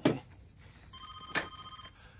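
A telephone ringing: one electronic ring of steady high tones, starting about a second in and lasting about a second, with a short click partway through.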